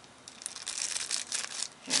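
A small clear plastic bag crinkling and crackling in the hands as a tiny item is pushed back into it, a busy run of rustles lasting about a second and a half.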